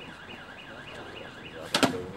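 A steady warbling tone that dips and rises about four to five times a second, in the manner of an electronic alarm, runs under the scene; a brief sharp knock cuts in near the end.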